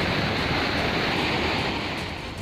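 Flood-swollen mountain river rushing over rocks: a loud, steady rush of fast-flowing water.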